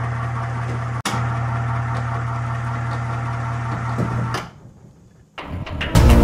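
Electric hoist motor running with a steady hum as it moves an overhead workbench. It drops out for an instant with a click about a second in and stops about four and a half seconds in. Music fades in near the end.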